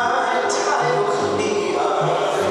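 A woman singing a gospel song into a handheld microphone, holding long notes, with other voices singing along. A low bass line moves in steps underneath.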